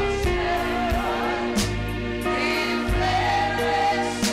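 Live gospel worship singing: voices holding sustained notes over keyboard and bass, with one crash about one and a half seconds in.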